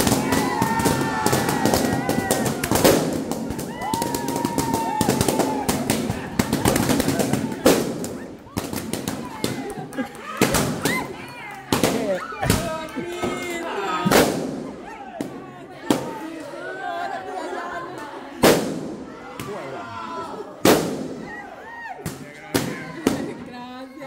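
Balloons being popped: a rapid volley of sharp bangs that thins after about eight seconds to single pops every couple of seconds, with people shouting and cheering over it.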